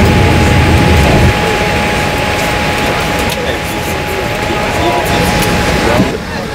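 Boeing 787 cabin noise at arrival: a steady air-conditioning hiss with a faint steady high tone, passengers' voices in the background, and a low rumble that drops away about a second in.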